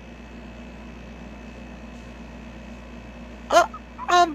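Faint steady hum, then one short vocal sound, like a hiccup, about three and a half seconds in.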